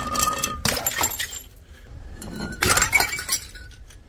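Glass bottle smashing on concrete steps: shattering crashes with clinking shards and brief ringing of the glass, a second loud burst of breaking about two and a half seconds in.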